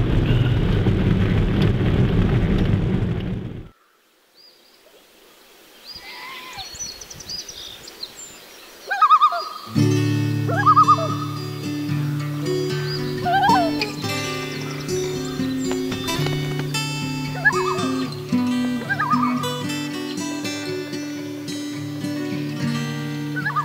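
Road noise inside a moving car, cutting off abruptly a few seconds in. After a moment of near silence, short calls of common loons begin. Background music with a steady low chord comes in and runs under the repeated loon calls.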